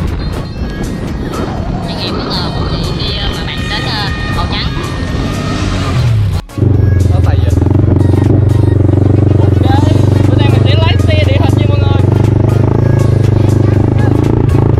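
A quad bike (ATV) engine running at a steady, loud drone as it is ridden across soft sand dunes. It starts abruptly after a cut about six and a half seconds in. Before that there is a busier mix of voices and wind.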